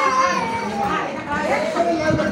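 Women and children talking over one another, one high voice standing out near the start.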